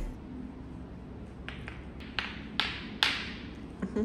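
Billiard balls clacking together under a toddler's hands: about six sharp clacks, each with a brief ring, spread over the second half.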